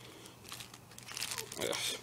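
Thin plastic shrink-wrap from a trading-card deck crinkling softly as it is stripped off and dropped.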